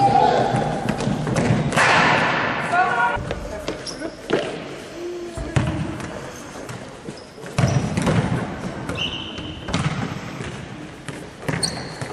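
A futsal ball being kicked and bouncing on a wooden gym floor: several sharp knocks, with players shouting and calling out, and a few short high squeaks from shoes on the floor, all in an echoing sports hall.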